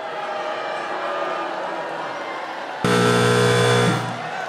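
Studio audience laughing and chattering, then about three seconds in a judge's red X buzzer sounds: a loud, harsh, steady buzz that lasts about a second and cuts off.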